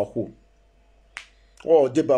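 A man speaking, breaking off for a pause with a single sharp click about a second in, then speaking again.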